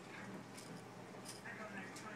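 Faint scraping of a metal knife cutting through a frosted layer cake, two brief scrapes less than a second apart, over quiet room sound.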